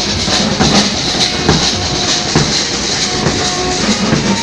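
Street band's snare drums, bass drum and hand cymbals playing loudly at a dense, fast beat.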